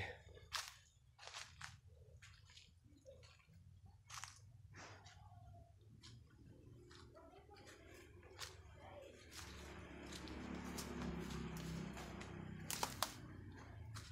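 Faint scattered crunches and clicks of footsteps on dry leaf litter and twigs, with a louder stretch of rustling in the second half as the walker brushes past plants.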